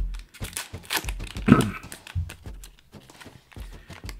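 Foil booster pack wrapper crinkling and rustling in the hands, in short irregular bursts with small clicks, as a trading card pack is worked open.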